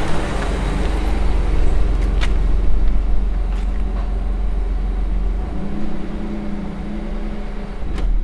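Toyota Highlander SUV driving up and stopping, then its engine idling, over a steady low rumble.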